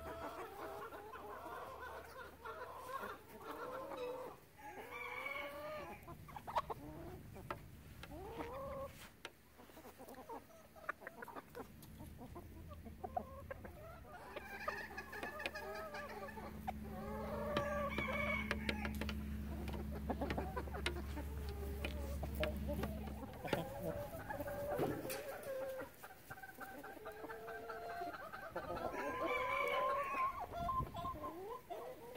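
Backyard chickens clucking and calling, with a few longer calls among the short clucks, over sharp taps of beaks pecking feed from a plastic tray. A low steady hum from an unseen source runs for several seconds in the middle.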